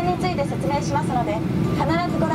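A woman's voice narrating a safety video in Japanese over the steady low rumble of a Boeing 737-800's cabin.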